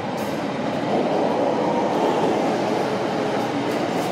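Steady rumble of a CTA 'L' train running through the station, swelling a little about a second in.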